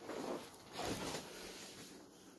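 Two short bursts of rustling, scuffing noise, the second a little longer, about half a second apart.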